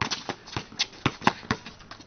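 Basketball dribbled hard and fast on a concrete driveway: a quick, uneven run of sharp bounces, about four a second, as the ball is crossed from hand to hand.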